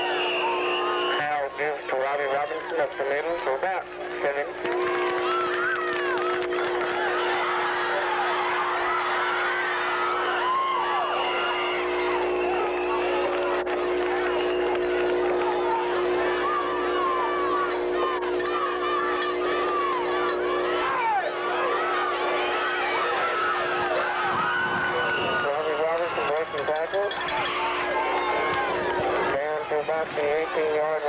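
Football crowd, many spectators talking and shouting at once, over a steady hum of several tones. The hum drops out briefly about two seconds in and again near the end.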